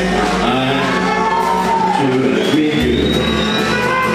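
Live gypsy-jazz swing band playing: upright double bass holding low notes under acoustic guitars and a clarinet, with a gliding melody line and some singing.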